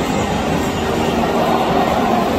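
Loud, steady stadium crowd din during the pre-match warm-up, with music over the stadium's public address running beneath it.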